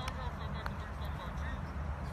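Open-air background: a steady low rumble with a faint haze over it, broken by two faint sharp clicks in the first second.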